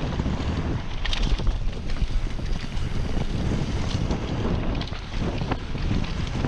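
Wind rushing over a chest-mounted action camera's microphone as a Trek Slash mountain bike descends a dirt trail at about 28 km/h, with tyre rumble on the dirt. Scattered sharp clicks and rattles from the bike over bumps, a cluster about a second in and more near the end.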